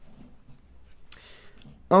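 Paper pages of a small paperback booklet turned by hand, a brief papery rustle about a second in.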